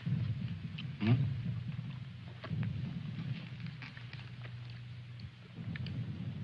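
A steady low rumble with a few faint light clicks, and a short murmured, voice-like sound about a second in.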